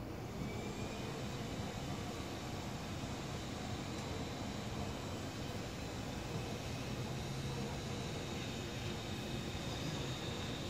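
Steady low rumble of outdoor background noise, with faint, thin high-pitched tones held above it. No distinct events.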